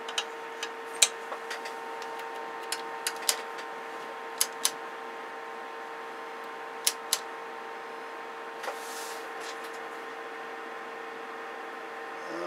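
A steady mid-pitched electronic tone over hiss from radio test gear, with sharp clicks scattered through it as the CB radio's controls are worked.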